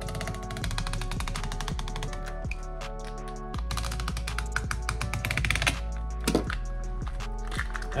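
Background music over rapid fine clicking as a utility knife slits a corrugated plastic wire-loom tube lengthwise, the blade ticking across its ribs in two runs.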